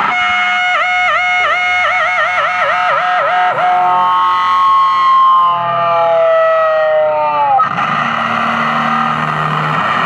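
Distorted electric guitar through a small Vox amplifier: a sustained note shaken by quick repeated dips in pitch that speed up, then a held note drawn slowly down in pitch, giving way about three-quarters through to a noisier, denser distorted passage.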